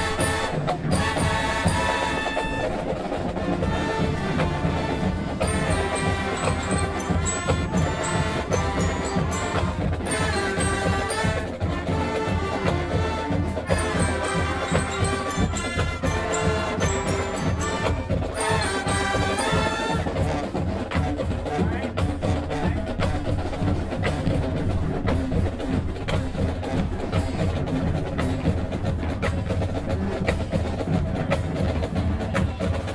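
High school marching band playing: brass and clarinets carry the tune over a drumline of snares and bass drums. About two-thirds of the way through, the horns mostly drop out and the drumline carries on.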